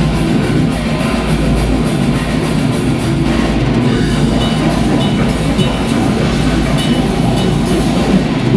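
Death metal band playing live: heavily distorted electric guitar and fast, dense drumming with cymbals, loud and continuous.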